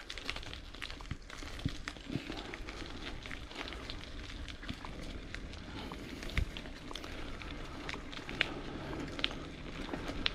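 Wheels rolling along a dirt forest path, with a steady low rumble and many scattered small clicks and crackles.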